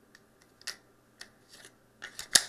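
A few faint clicks and taps from a Sig Sauer P320 pistol magazine being handled and turned over in the hands, the clearest about two-thirds of a second in.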